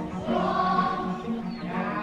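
Musical interlude of choral singing on long held chords, growing a little louder shortly after the start.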